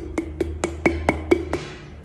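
Quick fingertip knocks on the mouth of a small glass bottle as folded paper is pushed down into it: about eight sharp taps, each with a short ringing note from the glass, stopping near the end.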